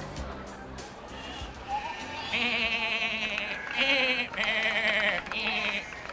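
Sheep bleating: several long, quavering bleats, one after another, starting about two seconds in, after a stretch of music.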